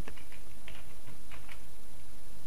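About five light clicks of a computer mouse and keyboard, scattered unevenly, over a steady low hum.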